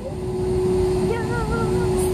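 Airliner cabin noise: a steady engine rumble with a constant hum. About a second in, a woman's voice sings a brief wavering note over it.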